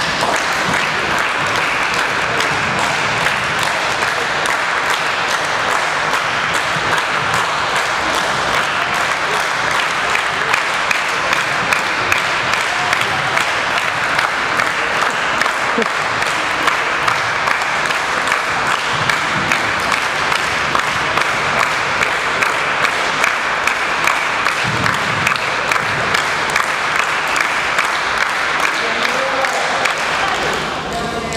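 Steady, unbroken clapping from a seated group of martial-arts students, holding an even level through the whole sparring round in a large gym.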